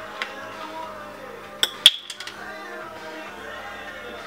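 Background music runs throughout. A little over a second and a half in come a few sharp clinks, the loudest ringing briefly: an oil bottle being handled before oil is poured into a frying pan.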